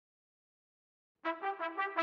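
Trumpet ensemble starting to play about a second in, a quick pulsing run of repeated notes.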